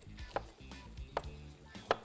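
Kitchen knife cutting a green bell pepper on a cutting board: three separate cuts, each a sharp knock, about one every 0.8 seconds, over soft background music.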